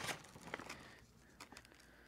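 Faint, light ticks and patter of fine-grade vermiculite sprinkled by hand onto seeded soil blocks, a few in the first second, then near silence.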